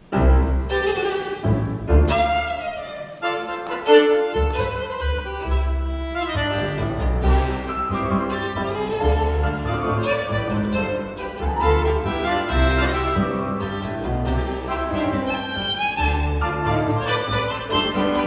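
Tango ensemble of violin, accordion, piano and double bass playing an instrumental introduction, the violin carrying the melody over deep double-bass notes on the beat. The music comes in all at once.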